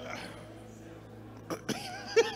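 Low, steady background keyboard music holds under a pause. About one and a half seconds in, a man breaks into laughter into the microphone with two short breathy bursts.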